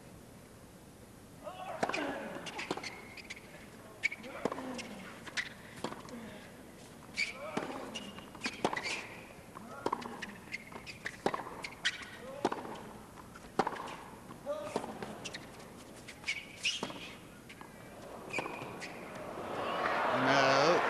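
Tennis rally on a hard court: the ball is struck back and forth with rackets roughly once a second, with the players' grunts on some of the shots. Crowd applause rises at the very end as the point is won.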